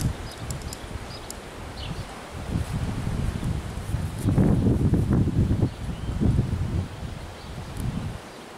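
Wind rumbling on the microphone, uneven and swelling about halfway through, with faint rustling.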